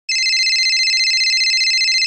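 A telephone ringing: one loud electronic ring of high tones with a rapid trill, about two seconds long, cutting off suddenly.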